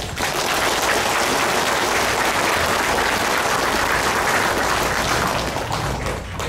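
Audience applauding steadily, thinning out near the end.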